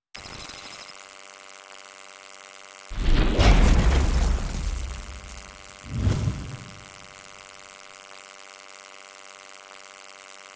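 Logo-sting sound effects: a deep boom about three seconds in that dies away over a second or two, then a shorter, lighter hit about three seconds later, over a steady hum.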